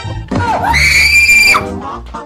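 A loud, very high-pitched scream of fright lasting about a second, starting just over half a second in, over background music.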